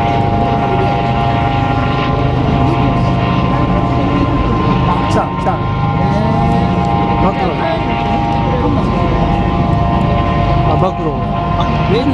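Motorcade traffic at night: a steady engine drone with several steady high whining tones that run under the vehicles passing.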